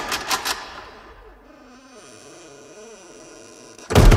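A door handle and latch being worked: several quick clicks in the first half second, then a quieter stretch, and a loud thud of the door just before the end.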